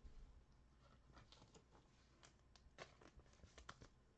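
Near silence: quiet room tone with a scattering of faint, short clicks and light rustles, mostly in the second half.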